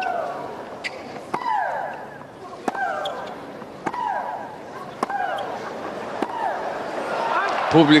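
Professional women's tennis rally on a hard court: racket strikes on the ball about every second and a quarter, each followed by a player's loud shriek that falls in pitch. Crowd noise swells near the end.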